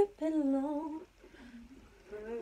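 A woman humming a short wavering tune for about a second, then going quiet.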